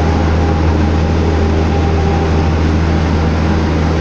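Heavy truck's diesel engine and tyres heard from inside the cab while cruising on the highway: a steady low drone under continuous road rush, with a faint steady whine.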